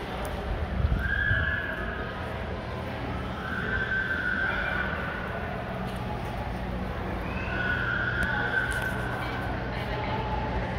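A baby crying in three long, high wails, about a second in, around four seconds in and near eight seconds, each lasting a second or more. The baby is unhappy. A steady low hum runs beneath.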